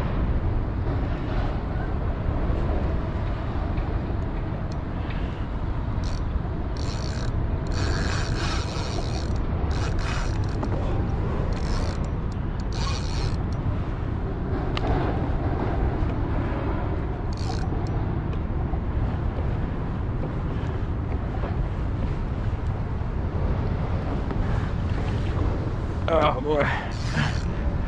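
Fishing reel working against a hooked striped bass, its gears and drag clicking in short bursts now and then, over a steady low rumble.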